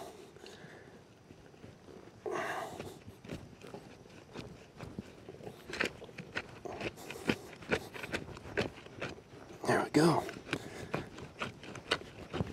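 A wooden digging stick is pushed and worked through soil to bore an angled vent hole, making irregular scraping and crunching. A short vocal sound comes about two seconds in and another near the end.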